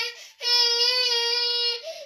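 A baby making long, steady-pitched 'aah' calls, the tail of one and then a single held call of about a second and a half.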